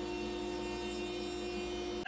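DeWalt trim router on a Genmitsu 4040 Pro CNC running steadily during a spoil-board flattening pass, an even motor hum with a held whine.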